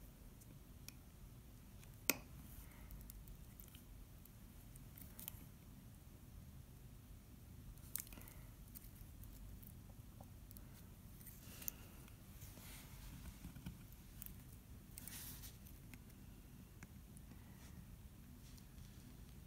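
Craft knife cutting the resist stencil on a glass sheet: faint scratching with a few sharp clicks, the loudest about two seconds in.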